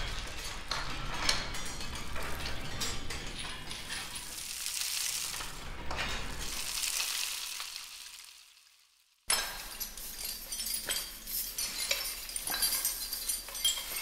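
Looped percussion textures from the Orcophony sample library's Textures patch. First, grinding rocks, a low drum rumble, a rainstick and a rattled bowl of cow teeth blend into a steady textured wash that fades out about nine seconds in. After a brief gap, a busier clatter of many small clicks and clinks starts suddenly, from shaken bags of doorknobs, hammers and rocks layered with chainmail.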